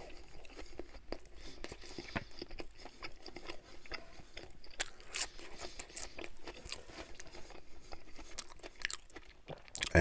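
Close-miked chewing of a mouthful of sandwich, soft bun with lettuce: quiet, irregular wet crunches and small mouth clicks.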